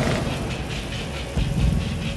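Dark trailer score and sound design: a deep rumbling bed with a heavier low hit about halfway through, under a fast, even ticking of about six or seven a second.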